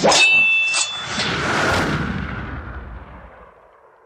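A sharp metallic clang with a high ringing tone, followed by a few lighter strikes within the next two seconds, fading out over about three seconds.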